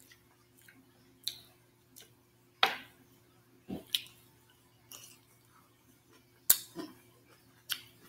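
Close-miked eating sounds: scattered wet lip smacks and mouth clicks of chewing, about eight in all, the sharpest about six and a half seconds in.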